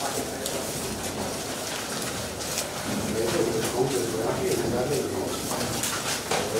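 Paper ballot slips rustling and being shuffled by hand over a background murmur of voices. A low wavering pitched sound joins in about halfway through.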